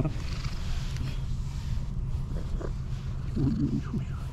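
Fluffy tabby cat purring steadily while being stroked, with a few short low calls near the end.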